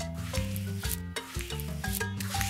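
Swishing paintbrush-stroke sound effect, repeated over and over, over light background music of short plucky notes.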